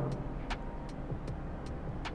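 Graphite pencil scratching across drawing paper as a leg is sketched, with faint scattered ticks as the lead touches down and lifts.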